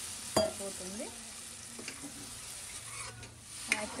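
Mutton curry in gravy sizzling in a pan, freshly thinned with water, while a metal spoon stirs it. There is a sharp clink of the spoon against the pan about half a second in.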